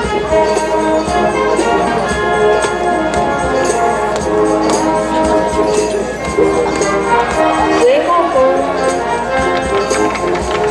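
Brass band playing a march for the marching players, with held brass notes over a steady drum beat.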